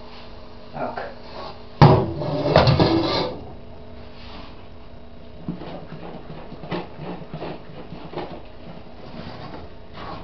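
An enamel pot set down with a clunk on the worktop about two seconds in, with a second or so of rattling and shuffling after it. From about halfway there are small knocks and scrapes of a wooden spoon stirring a thick melted-chocolate mixture in the pot.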